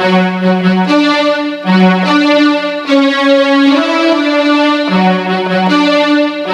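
Electronic keyboard playing a slow melody over held chords. A new note comes roughly every second, and each note is sustained rather than dying away.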